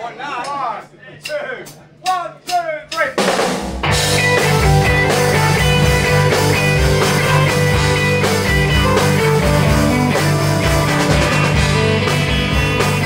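A few seconds of voices and laughter, then a live rock band of electric guitars, bass guitar and drum kit starts playing about four seconds in and keeps going at full volume.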